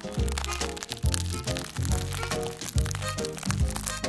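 Instrumental background music, with a crinkling, crackling noise over it as a plastic piping bag is squeezed to pipe buttercream.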